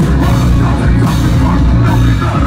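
Heavy rock band playing live and loud: distorted electric guitars, bass and a drum kit in a dense, unbroken wall of sound.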